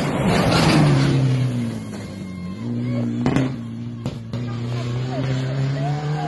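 Rally car engine at high revs passing close on a gravel road. The note falls in pitch as it goes by, with a loud rush of gravel and dust near the start, then carries on at a steady pitch. Two sharp cracks come about three and four seconds in.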